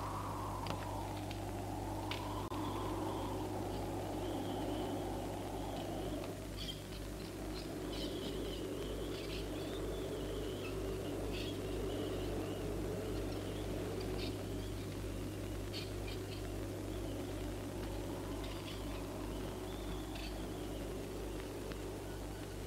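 Sparse high chirps and twitters, as of small birds, scattered through over a steady low hum and a rushing noise bed.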